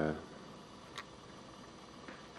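Faint steady room background with a single short click about a second in; the DC motor is not heard running.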